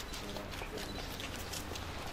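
Footsteps of several people in hard-soled shoes on paving, irregular sharp clicks, over a low outdoor hum with faint voices.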